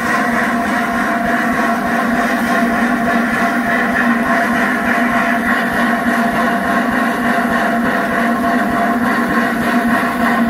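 LNER A4 Pacific steam locomotive No. 60009 standing or moving very slowly, giving off a steady hiss of escaping steam with a humming tone under it and no exhaust beats.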